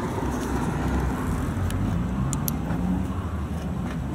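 A car's engine running with a low steady rumble, its note rising slowly through the middle, with two light clicks about two and a half seconds in.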